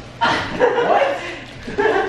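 A small dog barking among raised voices, a sudden outburst shortly after the start and another near the end.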